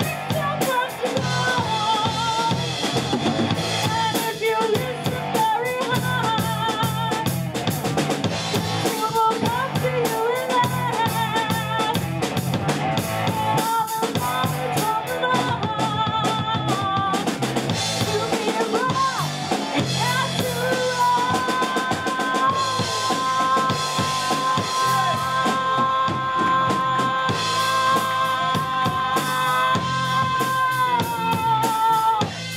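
A live rock band playing: female lead vocals over electric guitar, bass guitar and a drum kit with a steady beat. From about two-thirds of the way through, a long note is held steady to the end.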